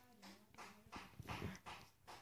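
Near silence: room tone with a few faint, brief sounds in the background.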